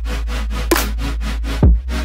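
Future bass track playing back: a steady sub-bass note under buzzy saw-synth chords chopped in a fast, even rhythm, with kick drums at the start and about a second and a half in.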